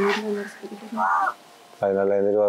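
A crow cawing once, briefly, about a second in, after a short stretch of voice at the start.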